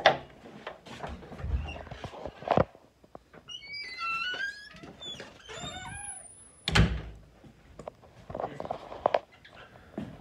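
Dull thuds and knocks, one at the start, one about two and a half seconds in and the loudest near seven seconds. Between them, for about three seconds, comes a string of high squeaks that slide up and down in pitch.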